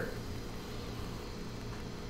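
Faint, steady low hum with light hiss: room tone.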